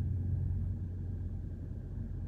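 Steady low rumble of an idling diesel truck engine.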